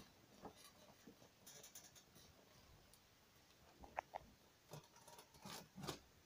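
Near silence: room tone with a few faint, scattered clicks and knocks.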